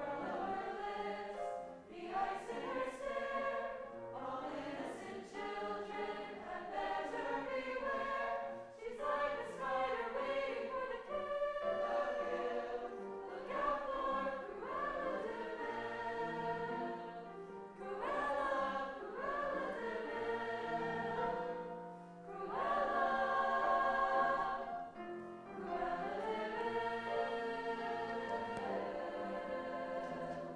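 Mixed-voice choir singing in harmony, in phrases with brief breaks between them.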